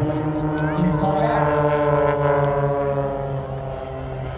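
Engines of a pair of display aircraft flying past together, a loud steady droning hum that fades toward the end.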